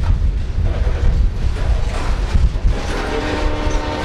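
Freight train's covered hopper cars rolling past close by: a steady low rumble of wheels on rail. About three seconds in, a steady sound of several held tones joins the rumble.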